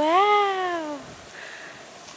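A dog whines once: a single cry about a second long that rises and then falls in pitch.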